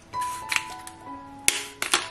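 Soft background music with sustained notes, broken by a few short rasping bursts as black pepper is sprinkled onto raw chicken pieces: once about half a second in, then a louder cluster from about one and a half seconds to near the end.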